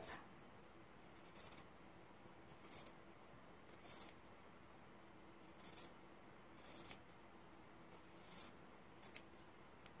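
Fabric scissors cutting through flannel, a run of faint, short snips about one a second, eight or so in all.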